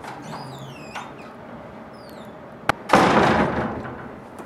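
A classroom door is opened with a few faint squeaks, gives a sharp latch click about two and a half seconds in, then shuts with a loud slam that rings out in the room.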